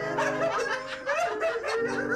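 Several people laughing hard together, over background music with held notes.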